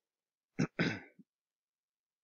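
A man clearing his throat once: a short rasp about half a second in, over within about half a second.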